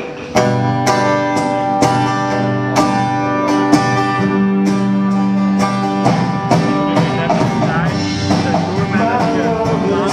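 Live band playing loud, led by a strummed acoustic guitar with drums. The band comes in hard less than a second in and keeps hitting strong accents about once a second.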